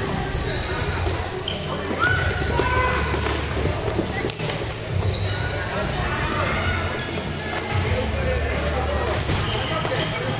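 Floorball being played on a sports-hall court: plastic sticks clacking against the ball and each other and shoes scuffing and squeaking on the floor, in a run of short sharp knocks, with players' voices calling in the echoing hall.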